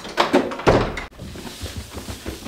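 A wooden interior door being worked: a few latch clicks, then one heavy thunk. After that, soft low thuds of footsteps coming down carpeted stairs.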